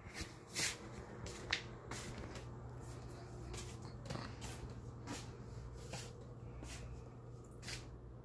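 Footsteps on a hardwood floor, roughly two short scuffs a second, along with a few sharper knocks near the start, over a steady low hum.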